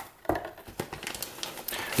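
Plastic packaging crinkling as hands lift packed parts out of a cardboard motherboard box, with scattered small clicks and taps.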